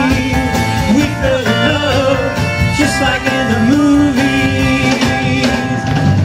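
A live rock band playing a mid-tempo 1960s-style pop-rock song: a Rickenbacker electric guitar strummed over a drum kit, with a melody line gliding up and down between the sung lines.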